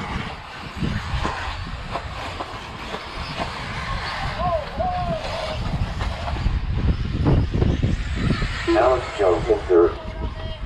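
Uneven low rumble of wind buffeting an exposed microphone outdoors, with brief snatches of talking voices about halfway through and again near the end.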